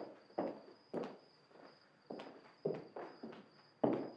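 Footsteps of two people walking across a hard floor, a sharp step about every half second.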